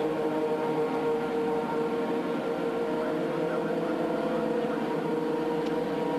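A steady mechanical drone with a constant hum, holding several unchanging tones, and no distinct pass-bys or changes in pitch: the background ambience under a motor-racing TV broadcast.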